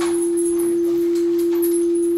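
A single steady, mid-pitched pure electronic tone, held unchanged like a sustained synth or reference note.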